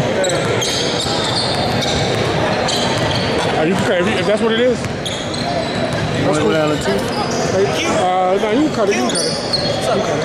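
Basketball being dribbled on a hardwood gym floor amid the echo of a large hall, with many voices from players and spectators; voices call out clearly from about four seconds in and again from about six to nine seconds.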